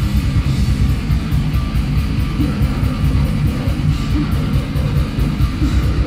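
A metal band playing live at full volume: distorted electric guitar over steady drum and cymbal hits, with the low end dominating.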